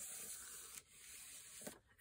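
Faint rustle and rubbing of paper being handled, in two short stretches with a light tap near the end.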